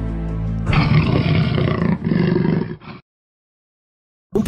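Soft music stops as a jaguar's roar comes in: two long calls of about a second each, the second trailing off, then a sudden cut to silence about three seconds in.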